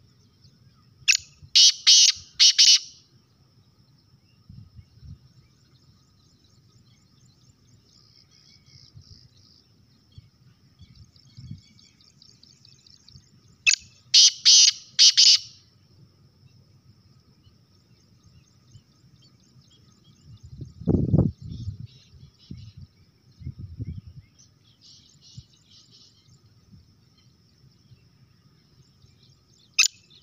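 A caged male black francolin calling: a loud, harsh run of four or five quick notes lasting about a second and a half, heard about a second in and again about 14 seconds in. A faint steady high hum and faint distant chirps carry on between the calls, and there is a low thump about 21 seconds in.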